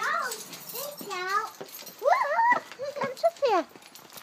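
Young children's high-pitched wordless vocalizing: four short squeals and sing-song calls, each gliding up and down in pitch.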